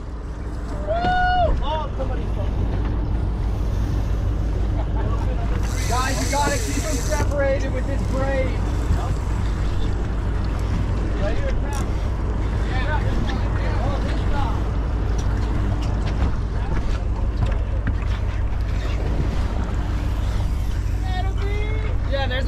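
Steady low rumble of a boat's idling outboard motors mixed with wind on the microphone and water around the hull, with a few short shouts from the crew.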